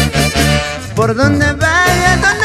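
A Peruvian folk band playing over a steady, pulsing bass beat. About a second in, a wavering lead melody line comes in above it.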